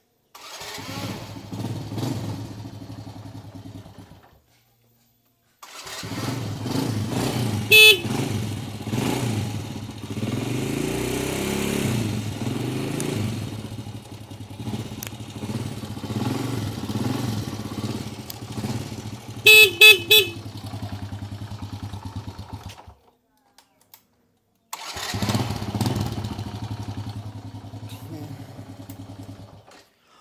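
A 1993 Honda Astrea Grand's small four-stroke single-cylinder engine running and being revved up and down. The horn gives a short beep about a quarter of the way in and three quick beeps about two-thirds of the way in.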